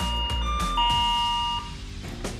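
Electronic two-tone doorbell chime: a higher note and then a lower one ring out about half a second in and die away by the last half second, over background music.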